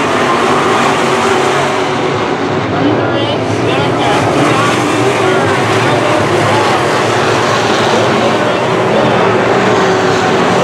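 A field of dirt-track sport modified race cars with V8 engines running at racing speed under steady throttle, their engine notes rising and falling as they race around the oval. Two cars pass close by about midway through.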